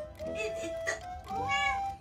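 A domestic cat meows, with a loud rising-then-falling call about one and a half seconds in, over background music.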